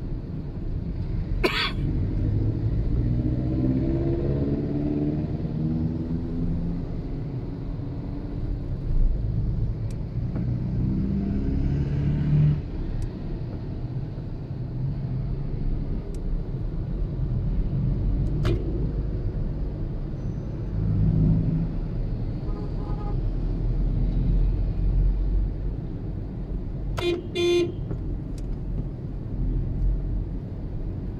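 Steady engine and road rumble heard from inside a car moving in slow city traffic, with an engine note rising in pitch as a vehicle accelerates a few seconds in. A short car horn toot sounds about a second and a half in, and several quick horn honks near the end.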